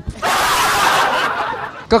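A burst of laughter lasting about a second and a half, heard as a dense, breathy wash rather than one clear voice, fading off just before the next voice comes in.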